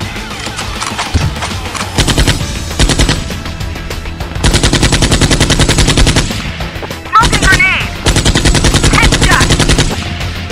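Machine-gun sound effects in two long rapid-fire bursts, the first about four seconds in and the second near the end, dubbed over a water-gun game, with a few short high rising-and-falling cries between the bursts.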